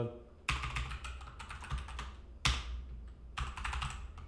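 Typing on a computer keyboard: a run of keystrokes entering text, with two heavier key strikes about half a second and two and a half seconds in.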